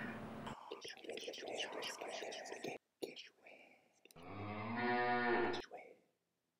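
Hushed whispering for about two seconds, then after a short pause a single long, low moo, like a cow's, lasting about a second and a half. The moo is the loudest sound.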